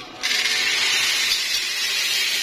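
Dry elbow macaroni poured from a plastic bowl into a pot of boiling broth: a steady rushing hiss that starts suddenly just after the start.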